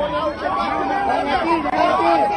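Crowd of protesters shouting and jeering at close range, many raised voices overlapping.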